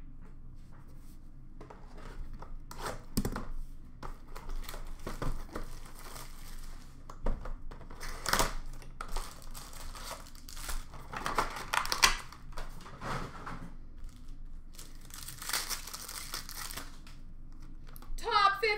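A cardboard hockey trading-card box being opened and its card packs torn open: irregular crinkling and tearing of wrappers and cardboard, with the loudest rips about halfway through and again near the end.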